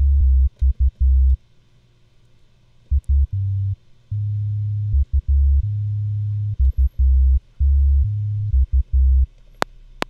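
Deep synth bass notes played in a pattern of short and held notes, breaking off for about a second and a half after the first second. Two sharp clicks come near the end.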